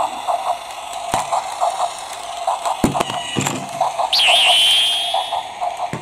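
Quick series of short high electronic beeps, with a couple of sharp plastic clicks as toys are set down. About four seconds in, a high whistle-like tone jumps up, wavers and holds for over a second.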